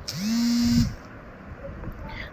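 A person's voice holding one steady pitch for under a second, a drawn-out hum or hesitation sound with a hiss over it, then it drops away to low background noise.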